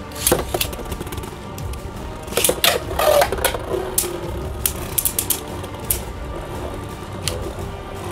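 Two Beyblade Burst spinning tops, a Venom Diabolos combo and Turbo Spriggan, clashing in a stadium. A cluster of sharp plastic clacks comes about two and a half to three and a half seconds in, followed by scattered clicks as they keep spinning and colliding.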